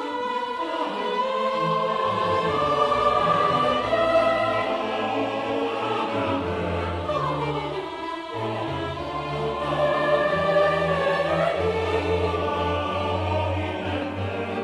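Classical music with orchestra and choir: sustained sung and bowed notes over a steady bass line.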